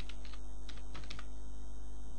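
Computer keyboard being typed on: about five separate keystrokes in the first second or so, over a steady low hum.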